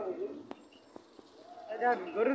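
People talking, with a quieter gap in the middle holding two sharp clicks about half a second apart.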